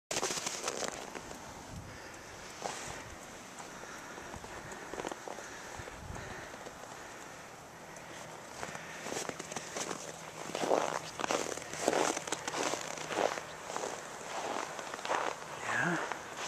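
Footsteps crunching in snow, starting about halfway in and going at roughly two steps a second.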